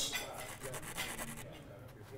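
Scratchy rubbing and scraping of a thin brick being pressed and worked into wet adhesive on a wall, fading over about two seconds.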